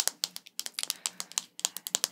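Rapid, irregular clicks of fingernails tapping and handling a hard plastic light-up star wand.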